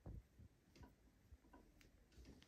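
Near silence, with faint, scattered soft ticks and rustles of fingers handling a mannequin's hair, the first the strongest.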